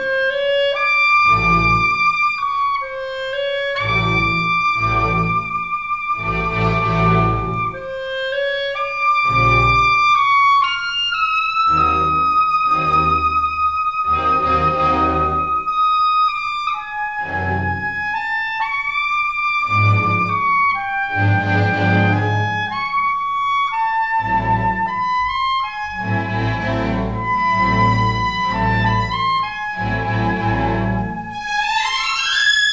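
Orchestral film-score music: a held high melody line over low chords that sound in repeated short blocks.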